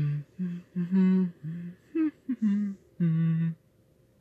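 A person humming a string of short notes at changing pitch, ending with a short laugh.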